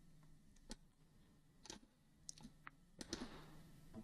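Near silence with several faint, short computer mouse clicks.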